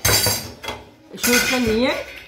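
A sudden metallic clatter of the gas stove's steel burner parts being handled, dying away within about half a second.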